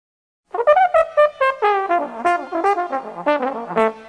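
Dixieland jazz horns, trumpet and trombone, playing a brisk introductory phrase of short notes in two lines. The horns start about half a second in, after silence.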